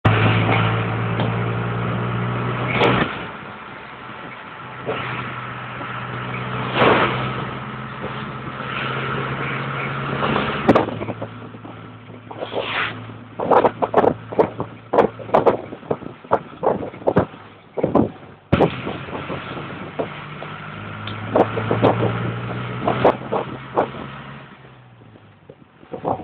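A road vehicle's engine running while driving, heard from inside the vehicle; its steady hum drops away after a few seconds and comes back more than once. Many sharp knocks and rattles come through the middle stretch.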